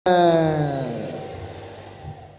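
A person's voice in a loud drawn-out cry that cuts in abruptly, slides down in pitch and fades away over about a second and a half.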